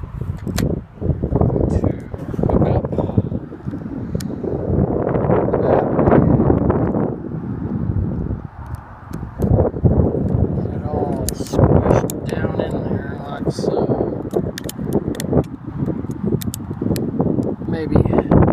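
Wind buffeting the microphone, with scattered clicks and knocks from handling a small plastic folding drone on a wooden table.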